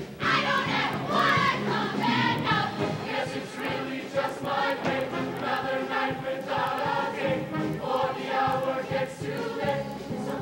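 Mixed-voice show choir singing with music, the voices coming in loudly right at the start and carrying on through.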